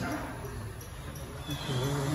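Indistinct low voices at a lull, with a soft thump near the start.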